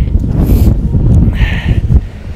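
Wind buffeting the microphone: a loud, uneven low rumble, with a brief hiss about one and a half seconds in.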